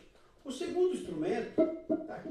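A man's voice, quieter than his normal talk, starting about half a second in after a brief near-silent pause.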